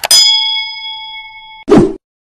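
A mouse click, then one bright bell ding that rings for about a second and a half and cuts off, then a short whoosh near the end. These are the sound effects of an animated subscribe-button overlay.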